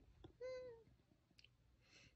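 A single short high-pitched vocal call, falling slightly in pitch at the end, followed by a faint click in otherwise near silence.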